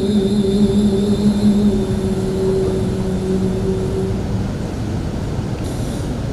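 A woman's voice holding one long, steady note of Quran recitation (tilawah), fading out about four and a half seconds in, over a steady low rumble.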